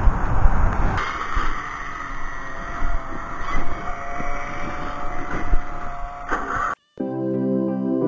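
A riding lawn mower's engine runs steadily as its controls are worked. About seven seconds in it cuts off suddenly and soft new-age style background music with long held tones begins.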